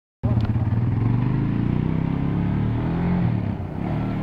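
Suzuki sport quad's engine running close by, then revving up with a rising pitch as it pulls away, easing off and getting quieter near the end as the quad moves off.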